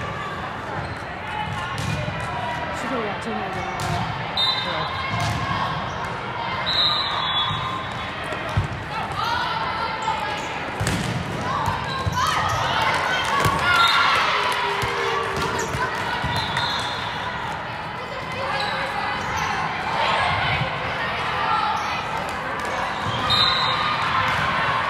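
Indoor volleyball rally in a large, echoing hall: the ball is struck several times, with scattered short high squeaks from the court, over the indistinct calling and chatter of players and spectators, which swells loudest partway through as the rally is played out.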